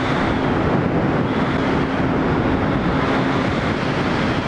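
Motorcycle riding at freeway speed: steady wind rush over the helmet camera's microphone with the engine's even drone underneath.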